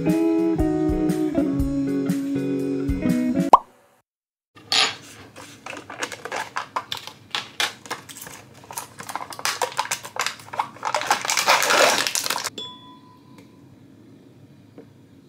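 Guitar background music that cuts off a few seconds in. After a short silence come irregular clicks and rustles of a plastic Greek yogurt tub being handled, thickening near the end into a dense scraping rustle as thick yogurt is spooned out into a glass dessert bowl.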